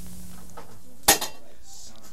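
Steady recording hiss with a low hum that fades out about half a second in, then a sharp click about a second in, followed by a smaller click, as the audio switches over between broadcast sources.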